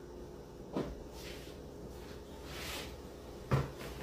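A wooden dining chair being moved and sat in: a knock about a second in, soft rustling of movement, then a louder knock near the end as the person settles into the chair.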